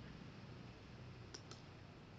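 Near-silent room tone with two faint computer mouse clicks close together, about a second and a half in.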